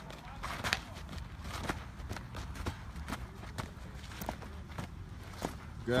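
A baseball catcher's feet and gear scuffing and knocking on a dirt infield as he shuffles and drops to block ball after ball. It comes as scattered sharp knocks, about ten in six seconds, over a steady low rumble.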